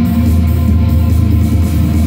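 Goth rock band playing live, loud and steady, with electric bass and guitar.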